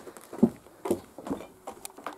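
Footsteps on old wooden attic floorboards: a few dull knocks about half a second apart as someone walks toward the stairs.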